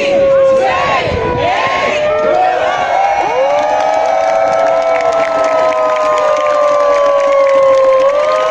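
A crowd of protesters cheering and whooping, with several voices holding long drawn-out notes that sag slowly in pitch.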